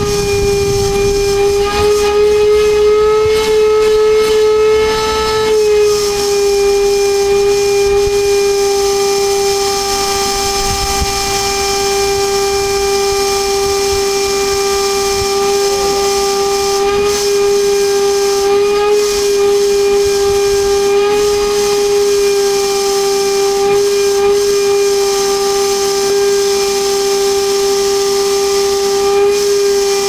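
Canister vacuum cleaner running steadily, a high motor whine over rushing air, as its hose nozzle is worked through a spaniel's coat. The whine lifts slightly in pitch about two seconds in and drops back at about five and a half seconds.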